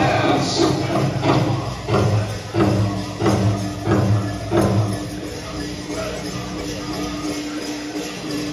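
Powwow drum group singing over a big drum beaten in a steady rhythm of about one and a half beats a second, with jingling from dancers' regalia. About five seconds in the drumbeat stops and a single long held note carries on.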